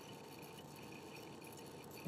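Faint, steady room tone with a low hiss and no distinct events.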